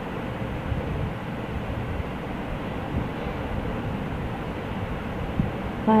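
Steady background noise, with a few faint short taps spread through it.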